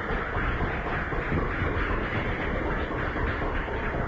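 Audience applauding: a dense, steady clapping.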